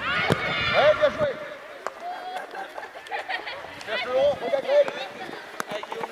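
High-pitched children's shouts and calls on a football pitch, loudest in the first second and again near the end, with a few sharp thuds of a football being kicked.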